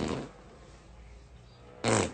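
A child blowing a raspberry against a man's bare forearm: a low buzz that stops just after the start. Then it is quiet until a short, sudden burst of sound near the end.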